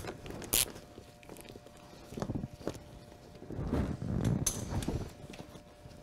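Quarter-inch-drive hand ratchet with an 8 mm socket and extension loosening the bolts of a car's plastic under tray: scattered clicks of the ratchet, with scraping and rattling of the plastic panel.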